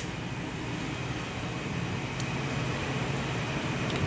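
Steady hum and hiss of industrial machinery and ventilation in a warehouse, with a faint tick about two seconds in.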